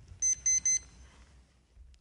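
Three short, quick, high-pitched electronic beeps from a digital timer within the first second.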